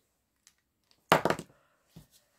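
A handful of small resin fruit charms tipped into a clear plastic storage box: a single brief clatter about a second in, with a few faint clicks before and after.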